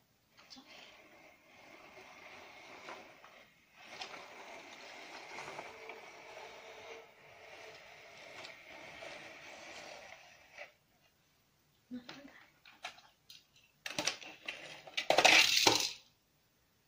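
A plastic toy car-carrier case scraping on a tile floor as it is slid and turned around, for about ten seconds. Near the end come a few clicks and a short, loud clatter of small metal toy cars knocking against the plastic.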